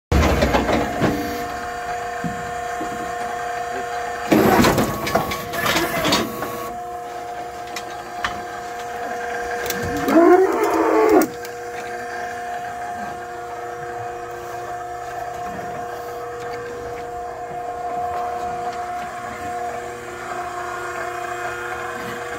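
Hydraulic squeeze chute's power unit running with a steady hum while its valve levers are worked. Metal clatter of the chute moving a few seconds in, and a cow mooing once, rising and falling, about ten seconds in.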